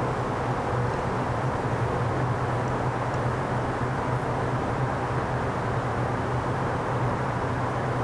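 Steady background noise with a constant low hum, the kind of room and ventilation rumble heard in a large hall.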